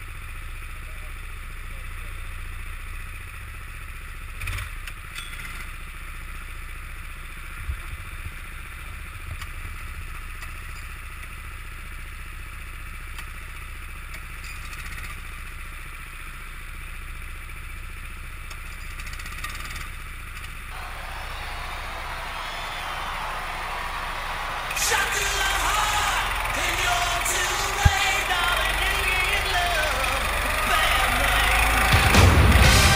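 Small go-kart engines running steadily at idle. Near the end, louder music comes in over them.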